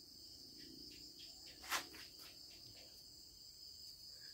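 Faint, steady high-pitched insect chirring, with a single sharp click about a second and three-quarters in.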